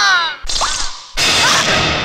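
Dramatic film sound effects: a falling sliding tone fades, then two sudden whooshing swishes come about half a second and a second in.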